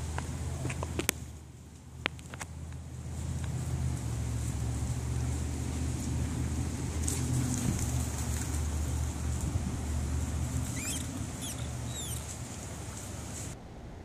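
A steady low rumble with a few sharp clicks one to two and a half seconds in. Several short, quick bird chirps come near the end.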